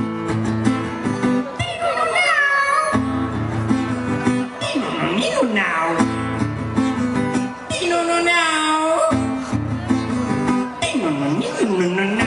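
Acoustic guitar strummed under a man's wordless, wailing vocal that slides up and down in pitch in several drawn-out wails, a mock imitation of a cat being pulled by its tail.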